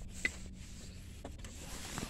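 Faint rubbing and handling noise from a hand-held phone as it is carried, over a low rumble, with a light click about a quarter second in.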